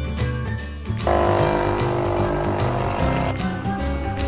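Small battery pump of a toy water dispenser buzzing for about two seconds, starting about a second in and cutting off, over background music.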